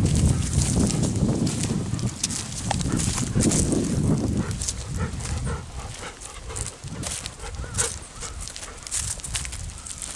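Golden retrievers close to the microphone, breathing heavily and snuffling for the first four seconds or so. After that comes the rustle and light crackle of dry grass and leaves as they move about.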